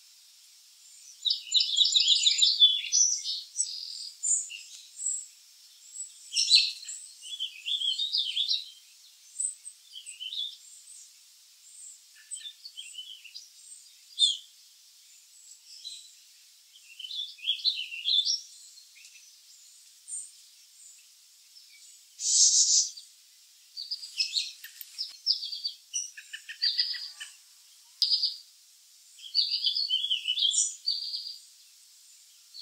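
Songbirds calling and chirping in short, high-pitched phrases on and off throughout, with a louder burst of calls a little past two-thirds of the way through.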